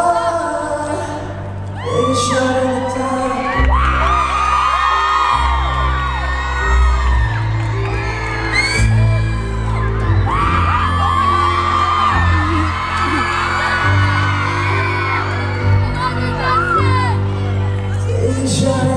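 Electric keyboard playing sustained chords over held low bass notes that change every second or two, amplified through a theatre PA, while a crowd of fans screams and cheers over it.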